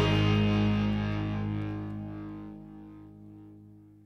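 Distorted electric guitar and bass holding the last chord of a punk rock song, ringing out and fading away.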